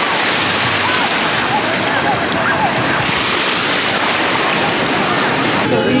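Ocean surf washing in over the sand around the feet, a loud steady rush of shallow breaking wash, with faint voices in the background.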